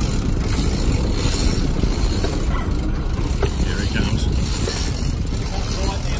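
Steady low rumble of a sportfishing boat's engine running at sea, mixed with the rush of wind and water.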